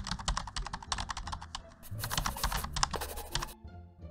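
Rapid keyboard-typing clicks, several a second, that stop about three and a half seconds in. Low background music runs underneath.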